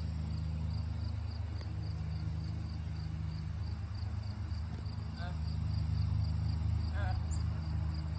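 Crickets chirping in an even rhythm, about three chirps a second, over a steady low hum. Two brief higher calls come in past the middle.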